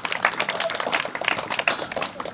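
Crowd applauding: many hands clapping irregularly.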